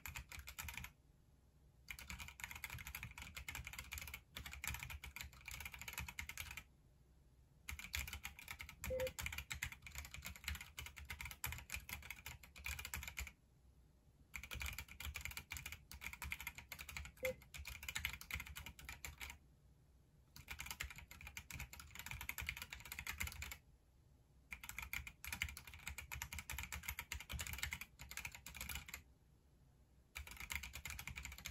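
Keychron Q3 Pro mechanical keyboard with brown (tactile) switches being typed on fast: dense runs of keystroke clicks, broken every few seconds by a pause of about a second.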